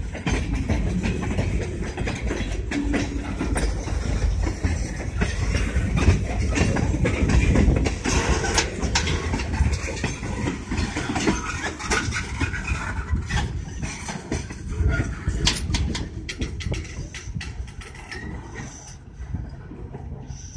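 Freight train of tank cars and covered hoppers rolling past, steel wheels clicking and clanking over the rails. The sound eases off over the last few seconds as the end of the train moves away.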